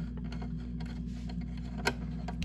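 Screwdriver turning a light switch's mounting screw into a metal electrical box: a run of small irregular clicks and scrapes, with one sharper click near the end.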